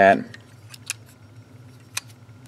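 Hard plastic parts of a TFC Divebomb transforming figure clicking as they are rotated and fitted by hand: a few light clicks, with a sharper one near the end.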